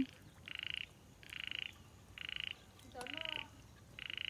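A frog calling, four short rattling calls about a second apart.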